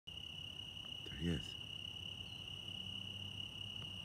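Crickets chirping in a steady, unbroken high-pitched trill, with a faint low hum underneath.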